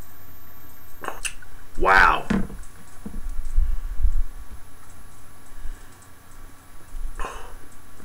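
A man sipping beer from a glass chalice, with low bumps from the glass being handled close to the microphone. A short voiced sound comes about two seconds in, and a breathy exhale follows the sip near the end.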